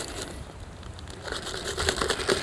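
Plastic Ziploc bag crinkling and rustling as powdered hydroponic nutrient is shaken out of it into a jug of water, with many small scattered crackles.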